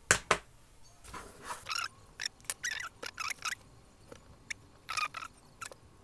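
Irregular short clicks and rubbing of small handling noises as the conductive rubber stylus tip on a Rotring 800+ mechanical pencil is pulled off and another fitted.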